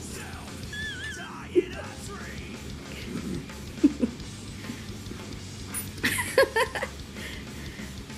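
Background music under a man's chewing and muffled, closed-mouth sounds as he eats a jalapeño popper, with a short burst of paper napkin rustling about six seconds in.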